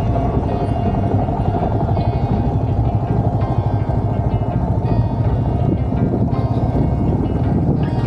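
Motorcycle running steadily at cruising speed on a paved road, a continuous low rumble of engine and road noise, with background music over it.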